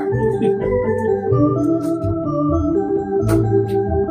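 Organ music with held chords over a bass line that steps to a new note every half second or so, with a couple of short clicks near the end.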